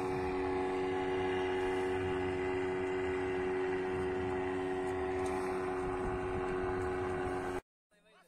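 Steady drone of a small motor, holding several level tones throughout, which cuts off suddenly near the end.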